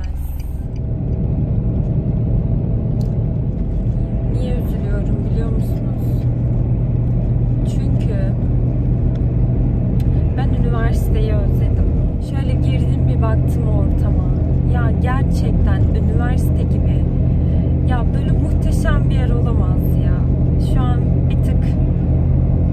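Steady engine and road rumble inside a moving car's cabin, dipping briefly about twelve seconds in.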